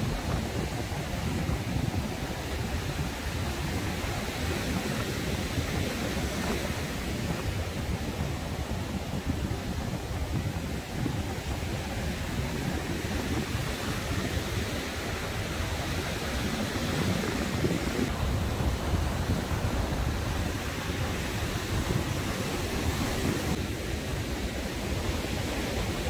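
Rough sea surf breaking steadily on the beach during a storm swell at high tide, with wind rumbling on the microphone.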